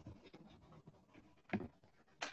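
Faint scratching and rustling, with a short soft knock about one and a half seconds in, picked up through a participant's microphone on a video call.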